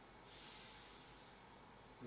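A person's breathy exhale, a soft hiss that starts about a third of a second in and fades away over about a second.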